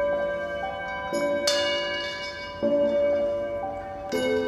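Tibetan singing bowls struck with mallets one after another, each ringing on with several steady overlapping tones. Fresh strikes come about a second in, a brighter higher one just after, and two more in the second half.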